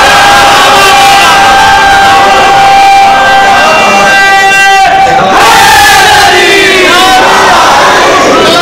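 A crowd of men shouting together in a hall over a loud PA. A long steady held tone runs through the first five seconds or so, then breaks off, and a new round of shouting follows.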